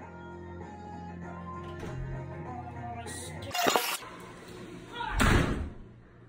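Two loud door slams over background music: a sharp crack about three and a half seconds in, then a heavier, longer thud about a second and a half later.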